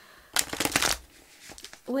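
A deck of tarot cards riffle-shuffled by hand: a quick, dense flutter of cards snapping together about half a second long, then quiet handling as the deck is squared.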